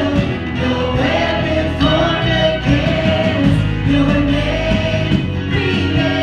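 Live contemporary worship band playing: male and female voices singing together over electric guitar, drums and keyboard, with steady bass underneath.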